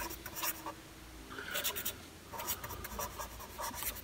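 A pen writing on a sheet of paper: faint scratching strokes in about four short runs, with brief pauses between.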